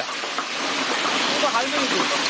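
Hail pelting a concrete yard and flowerpots: a dense, steady hiss of hailstones striking. A person's voice is heard faintly about a second and a half in.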